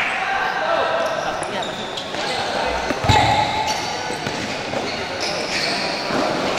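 Indoor futsal game in a reverberant sports hall: players' and onlookers' voices calling, shoes squeaking on the court, and a ball struck hard about three seconds in.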